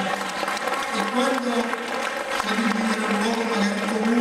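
Crowd applauding, with a man's voice speaking over the clapping through the microphone.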